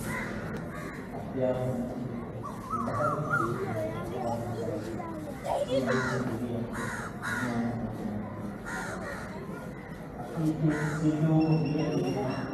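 Crows cawing several times at intervals over the voices of a crowd of people talking.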